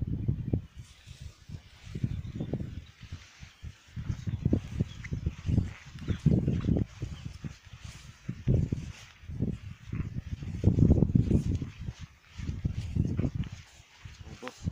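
Footsteps swishing through tall meadow grass, with irregular low buffeting from wind on the microphone.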